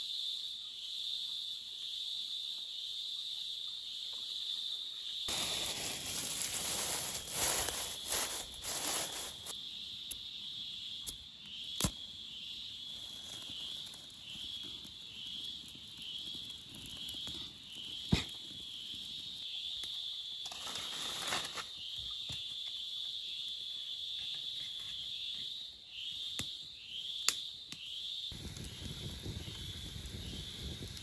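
Insects chirping in a steady, high, pulsing band throughout. A stretch of rustling handling noise comes several seconds in and again briefly later, with a few sharp clicks, and a low rushing noise starts near the end.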